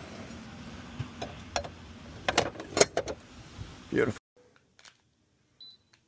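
A string of sharp metallic clicks and clacks from a grey metal outdoor AC disconnect box being handled and closed up after power is restored, over a steady outdoor background hiss. After about four seconds the sound cuts abruptly to near silence.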